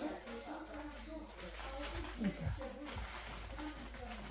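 Faint, muffled voices talking in the background, too low to make out words.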